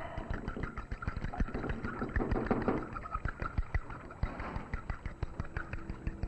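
Egg beater clattering against a mixing bowl as batter is beaten: a fast, uneven run of clicks.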